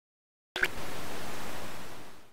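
A short click about half a second in, then a steady hiss of television static.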